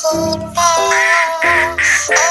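Children's nursery-rhyme backing music with cartoon duck quacks, several short quacks in the second half.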